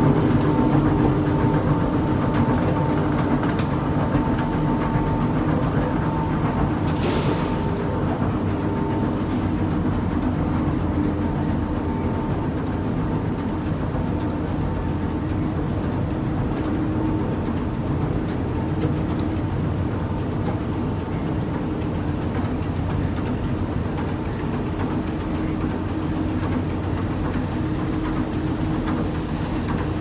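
Long, older Hitachi escalator, in service since the JNR era, running under a rider: a steady mechanical rumble from the moving steps and drive, with a constant low hum and a faint higher whine.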